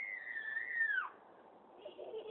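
A dog whining: one long high whine that sags slightly in pitch and then drops away sharply about a second in.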